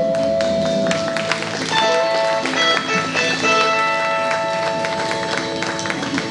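Small country band playing the closing bars of a song: acoustic guitar, electric guitar and upright bass under long held lead notes.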